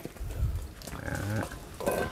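Low thuds near the start, then a short, faint farm-animal call about a second in.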